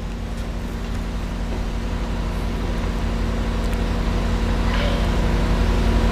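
Heavy-duty truck diesel engine idling steadily, gradually getting louder.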